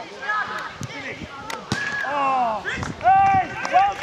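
Footballers' shouted calls across an open pitch, loudest about three seconds in, with a few sharp knocks of the ball being kicked.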